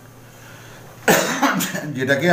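A man coughing twice in quick succession, about a second in, after a quiet pause.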